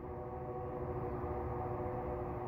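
A steady hum of several held tones over a low rumble.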